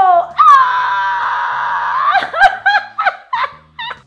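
A woman's long, high-pitched scream held for about two seconds, then breaking into laughter.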